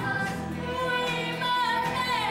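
A stage-musical number sung live: a solo voice holds long notes with small glides between pitches over instrumental accompaniment.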